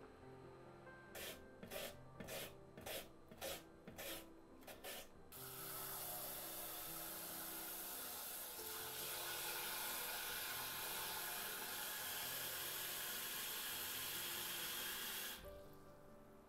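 Kitchen knife making about eight quick cuts through daikon radish on a wooden cutting board. Then tap water runs steadily into a glass bowl of shredded daikon for about ten seconds and stops suddenly near the end.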